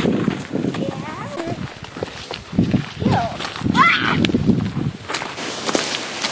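Footsteps scuffing and sliding on dry dirt and loose gravel as a child scrambles down an embankment, in a series of short, uneven bursts.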